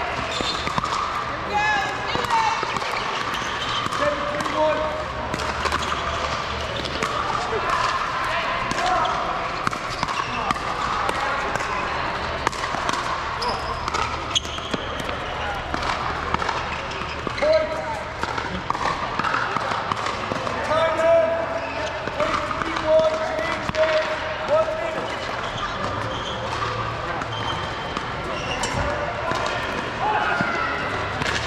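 Sharp pops of pickleball paddles striking plastic balls, many scattered irregularly through, with players' voices talking underneath.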